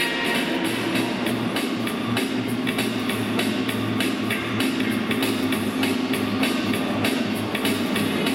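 Accompaniment music for a rhythmic gymnastics routine with a steady drum beat. A bass line comes in about a second in.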